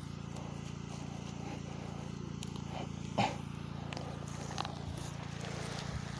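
A steady low hum, with one brief knock about three seconds in.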